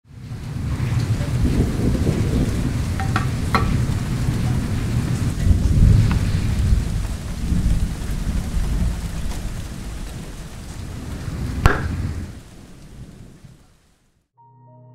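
Steady rain with low thunder rumbles, fading in at the start and fading out near the end, with a few sharp cracks, the loudest a little before the fade.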